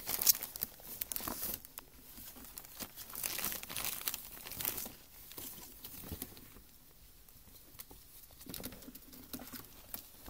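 Ferrets scrambling in and around a glossy printed gift bag with plastic wrapping inside, the bag and plastic crinkling and rustling in irregular bursts. The rustling is loudest in the first second and a half and again about three to five seconds in, then fainter.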